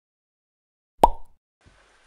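A single short, sharp pop about a second in, out of complete silence, followed by faint room noise.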